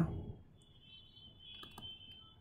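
A few faint clicks at the computer, close together a little past the middle, over a faint steady high whine.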